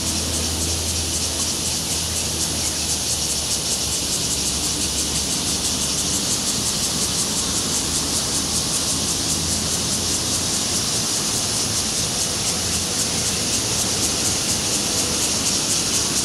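Steady high-pitched hiss of outdoor background noise with a low hum beneath, unchanging throughout.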